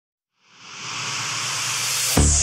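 Synthesizer noise swell fading in about half a second in and building steadily, with a faint low pulse beneath: the intro riser of a spacesynth/italo disco dance track.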